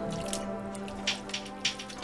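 Spatula stirring zucchini noodles and meat sauce in a pan: a few short, wet clicks and squishes, over background music.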